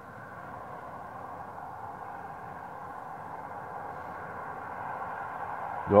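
Steady background noise, a faint hum and hiss that grows slowly louder, with no distinct event in it.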